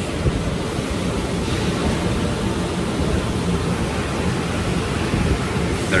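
Steady, even rushing noise of machinery running in the background, with no distinct knocks or tones.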